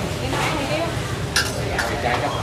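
Spoons and bowls clinking over indistinct background chatter, with one sharp clink about one and a half seconds in.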